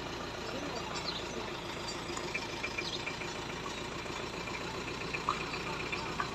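A motor engine idling steadily, with a few faint distant voices.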